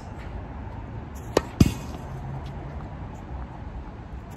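A tennis racket strikes a served ball with a sharp pop. A split second later comes a louder thud with a brief rattle as the ball hits the court's fence.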